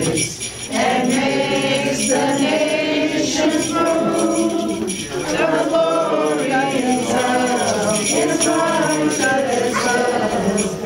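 A group of carolers, men, women and children, singing a Christmas carol together, with a short break between phrases about half a second in.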